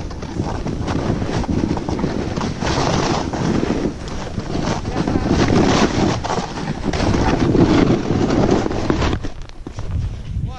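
Snowboard sliding and scraping through deep, thick snow, with wind rushing over the body-mounted action-camera microphone; the noise surges unevenly and eases slightly near the end.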